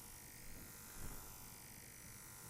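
Faint buzzing from a laptop's built-in speakers playing repeated FMCW radar chirps, beam-steered between the left and right speakers as a phased array.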